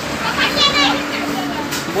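High-pitched voices calling out about half a second in, over a steady wash of water from a hose pouring and splashing onto a concrete floor.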